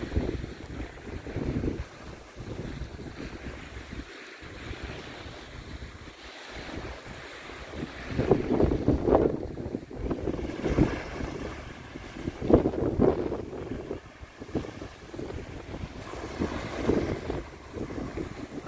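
Wind buffeting the microphone in uneven gusts, stronger in the second half, over small lake waves washing onto a sandy beach.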